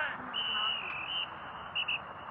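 A referee-style whistle blown at football practice: one blast of about a second, then two short blasts near the end, over the hiss of an old film soundtrack.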